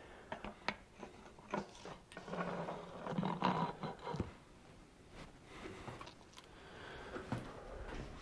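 Light clicks and taps of a steel cover plate with valve springs being fitted onto the fuel filter housing of a Caterpillar D315 diesel and seated over its studs. A faint low hum comes in around the middle.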